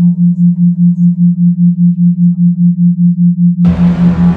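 Binaural-beat sine tone: a steady low hum that pulses about six times a second, a beat in the theta range. An ambient music pad comes in near the end.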